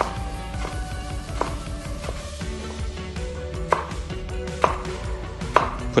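Chef's knife slicing fresh red chilies into small discs on a wooden cutting board, knocking on the board at an uneven pace.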